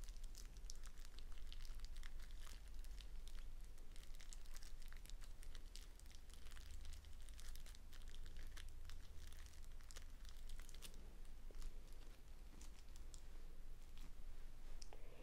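Crinkling and crackling of a plastic-wrapped four-pack of white erasers being turned over in the hands, a dense, irregular run of small sharp clicks.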